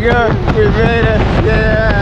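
Wind buffeting the microphone under an open parachute canopy, with a high voice making drawn-out, wordless calls that slide up and down in pitch.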